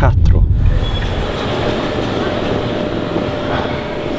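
Car cabin road rumble for about the first second, then a steady rolling noise of two wheeled suitcases being pulled across a tiled floor.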